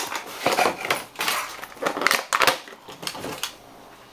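Plastic and cardboard toy packaging being opened and handled: a busy run of crinkles, clicks and small knocks that dies down near the end.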